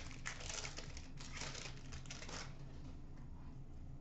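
Trading cards being handled, with crinkling of a pack wrapper: a quick run of crinkles and light clicks for about two and a half seconds, then quieter handling.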